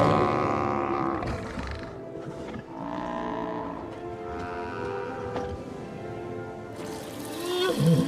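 Film sound effects of a large fictional sea creature, the thala-siren, giving long, drawn-out calls, with a music score underneath. The calls are loudest near the start.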